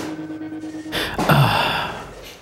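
A low steady music tone fades out about a second in. A man then sighs heavily: a breathy exhale whose voice drops in pitch as it trails off.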